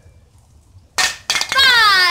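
A metal spray can thrown into a flip hits concrete about a second in and knocks twice as it falls onto its side. A child follows it with a loud, long 'ohh' that falls in pitch.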